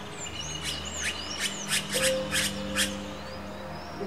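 Red-rumped caciques calling: a run of about seven short, sharp notes roughly every third to half second, mixed with thin high downslurred chirps and one held whistle, over soft steady background music.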